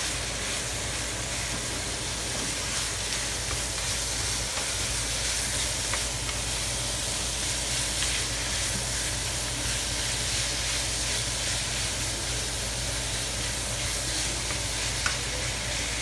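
Ground beef and garlic sizzling steadily in a hot nonstick skillet while being stirred and scraped with a wooden spatula, with a light tap near the end.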